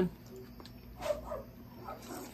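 Close-miked eating: wet chewing and slurping of lasagna noodles taken from a fork, with a short louder mouth sound about a second in.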